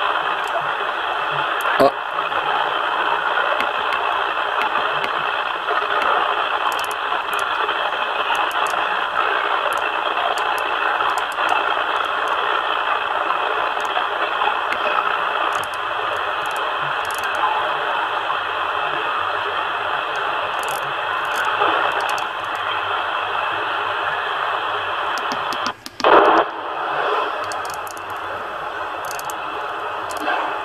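CB transceiver receiving the 27 MHz band through its speaker: steady static and interference with faint, unintelligible voices of stations in it, while the dial is tuned across the band. The noise reducer does not clear the interference. About 26 seconds in the sound drops out for a moment, then comes back with a louder burst.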